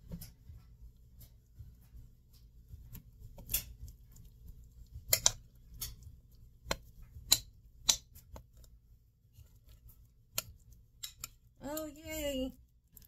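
A metal spoon clinking and scraping against a glass mixing bowl and metal loaf pan as thick banana bread batter is scraped out: a scattering of sharp clicks, several close together in the middle.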